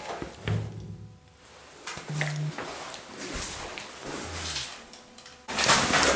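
Drywall work with gypsum board: a few faint knocks and thuds from the board being handled, then a sudden, much louder scraping and rustling noise near the end.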